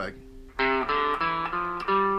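Epiphone semi-hollow electric guitar playing a quick phrase of single picked notes, about five notes stepping through the low strings, starting about half a second in.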